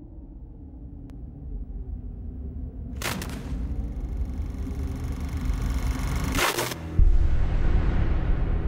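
Trailer sound design: a low rumbling drone that swells steadily louder, cut by two sharp hits about three seconds in and about six and a half seconds in, then a heavy low boom about a second before the end.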